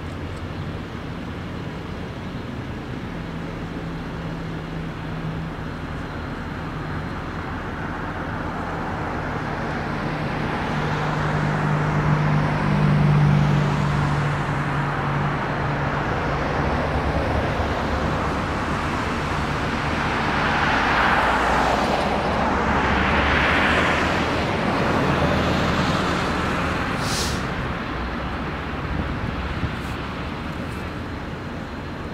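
Road traffic driving past: a steady engine hum that grows louder toward the middle, then two swells of tyre and engine noise as vehicles pass close by in the later part, with a short high-pitched sound near the end.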